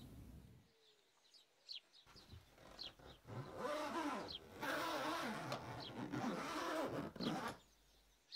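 Birds chirping faintly over quiet outdoor ambience. From about three seconds in until near the end, a slightly louder rushing sound with a wavering low pitch runs under the chirps.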